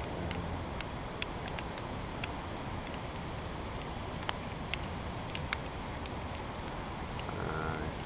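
Steady rain falling, a constant hiss broken by scattered sharp ticks of single drops.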